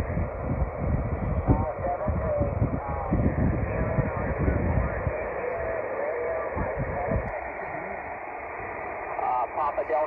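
Yaesu FT-817 receiving single-sideband on the 20-metre band: thin, band-limited static with a weak voice from a distant station. The voice comes back stronger near the end. Low rumble on the microphone fills the first few seconds.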